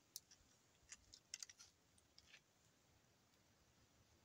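Near silence broken by a handful of faint, sharp clicks in the first two and a half seconds: small handling sounds as a muzzleloader is being loaded by hand.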